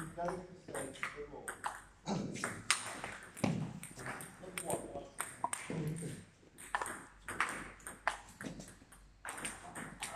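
Table tennis balls hit back and forth, making sharp irregular clicks off the bats and the table. Voices can be heard in the hall as well.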